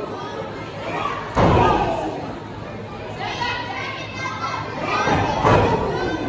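Two heavy thuds of a body hitting the wrestling ring's mat, the first and loudest about a second and a half in with an echo through the hall, the second near the end. Spectators, including children, shout throughout.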